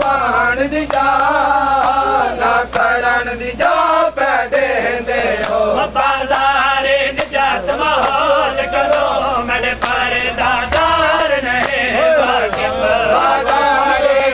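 Live Shia noha: men's voices chanting a mourning lament, cut through by sharp slaps of matam, hands beating on bare chests at a rough beat.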